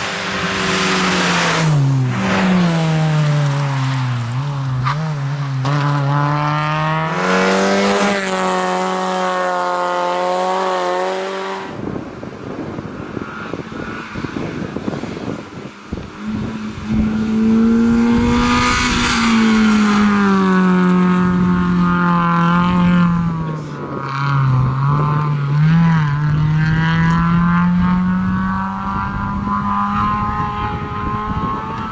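Fiat Seicento rally car's small petrol engine driven hard, its pitch falling and rising again as the driver lifts, shifts and accelerates between corners. The sound breaks off suddenly about twelve seconds in. After a few quieter, noisier seconds the engine note returns and again falls and climbs.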